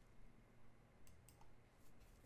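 A few faint clicks of a computer mouse and keyboard, bunched about a second in, over near-silent room tone.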